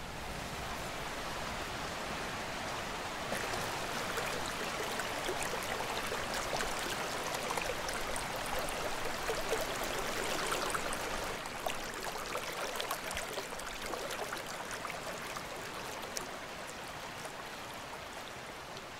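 Shallow river water running over stones, a steady wash with small gurgles and trickles throughout. It swells slightly a few seconds in and eases off toward the end.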